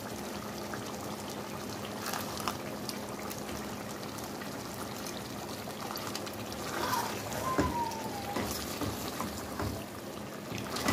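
A pot of palm-oil stew simmering with a steady bubbling, over a faint steady low hum, with a few light knocks of a silicone spatula against the pot as crabs are stirred in.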